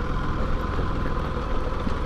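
Bajaj Pulsar 200NS motorcycle's single-cylinder engine running steadily, heard from on board the bike while riding a rough dirt road.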